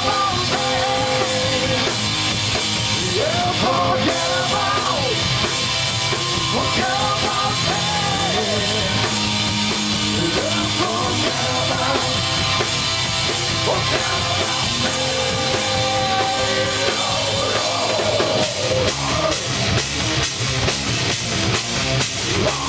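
Live heavy rock band playing loud: distorted electric guitars, bass and a pounding drum kit, with a held, wavering melody line over them. The drums stand out more sharply near the end.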